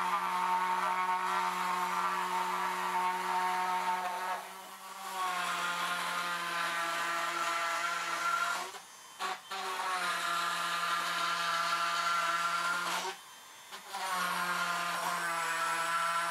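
Dremel rotary tool with a drill bit running with a steady whine as it is plunged into and cut through foam. Its pitch sags slightly under load about a third of the way in. It stops briefly twice, about halfway through and again near the three-quarter mark, and each time starts up again.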